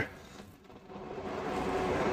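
Faint steady background noise with a low hum, growing slowly louder over the second half.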